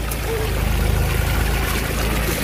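Water pouring steadily out of the open end of a black corrugated drainage pipe onto gravel.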